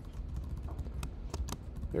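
Computer keyboard keys tapped: several short, irregular clicks.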